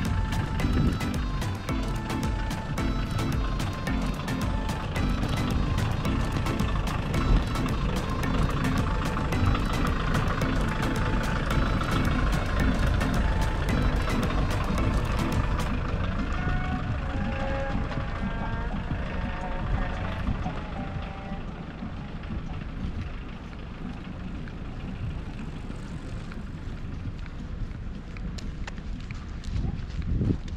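Open-air walking ambience: a steady low rumble of wind on the camera microphone, with music and some voices in the background. The higher sounds thin out about halfway through.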